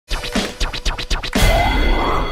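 Short logo jingle with record scratching: a quick run of scratch strokes for over a second, then a louder sustained rising sound that carries the title in.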